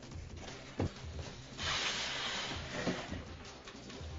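Background music with a steady low pulsing beat. There is a single thump about a second in, and a loud burst of hiss lasting about a second in the middle.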